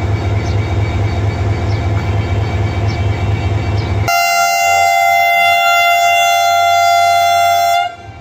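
Pakistan Railways HGMU-30 diesel-electric locomotive idling with a steady low drone. About four seconds in, its horn sounds one long, loud blast of several tones, held for nearly four seconds before cutting off: the signal that the train is about to depart.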